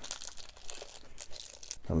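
Clear plastic sleeve crinkling as a fountain pen wrapped in it is slid out of its box: a run of small, irregular crackles.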